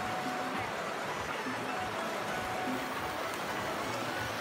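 Shallow river flowing over rocks: a steady rush of water.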